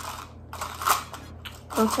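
Rustling handling noise with a few small clicks as hair pins are picked up by hand. A word is spoken near the end.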